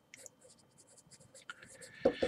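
Faint scratching of a pencil writing on paper, in a series of short strokes.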